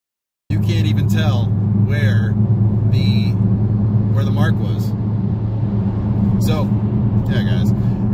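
Steady low drone of a Dodge Challenger Scat Pack's 392 HEMI V8 and road noise, heard from inside the cabin while cruising, starting abruptly about half a second in.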